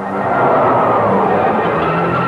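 Cartoon soundtrack: a rushing gust of wind swells in at the start over low sustained orchestral notes.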